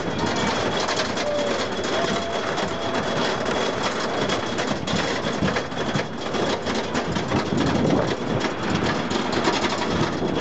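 Wooden roller coaster train climbing its chain lift hill, heard from a rider's seat: a steady, rapid clatter of the lift chain and the anti-rollback ratchet.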